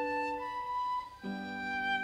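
Solo violin playing a slow, lyrical melody with vibrato, its long notes sliding between pitches, over sustained accompanying chords that break off and change about a second in.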